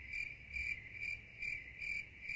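Crickets chirping: a steady high trill that pulses a little more than twice a second. This is the stock 'crickets' sound effect used as a cue for awkward silence.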